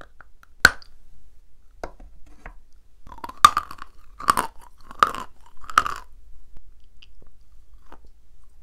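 A stick of edible chalk snapping sharply as it is bitten off, then being chewed close to the microphone: four loud crunchy chews a little under a second apart, then quieter chewing.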